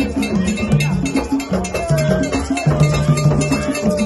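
Live hand-drum music: several drums beaten in a fast, dense, steady rhythm, with a voice holding a long note over it in the second half.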